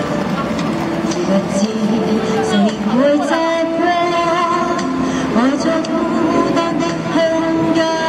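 A woman singing live into a handheld microphone through a small busking amplifier, sliding up into long held notes about three seconds in and again about halfway, over a backing track.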